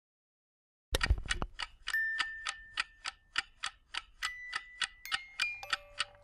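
Trailer sound design: after a second of silence, a low hit and then a fast, even clock-like ticking, about four ticks a second, with sustained high tones layered in one after another.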